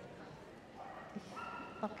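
A dog whining faintly: one high, steady note lasting about half a second around the middle, with a short yip just before the end.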